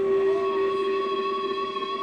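A live band's held final chord ringing out as a few steady sustained notes that slowly fade.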